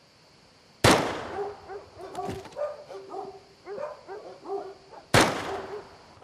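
Two single gunshots, about four seconds apart, each a sharp crack with an echoing tail. Short pitched calls are heard between them.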